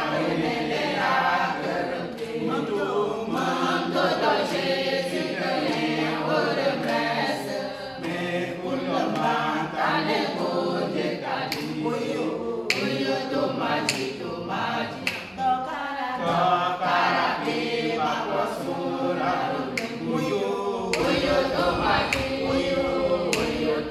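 A mixed group of women and men singing a hymn together without instruments, a song of hope. A few sharp claps cut through the singing around the middle.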